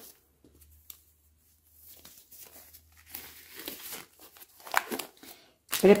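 Sterile gauze packet crinkling and rustling as gloved hands handle and open it. The crinkling is quiet and irregular, starts about two seconds in after near silence, and has a few sharper crackles near the end.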